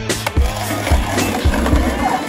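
Skateboard landing and rolling on concrete, with several sharp clacks of the board in the first second and a half, over hip-hop music with a deep bass line.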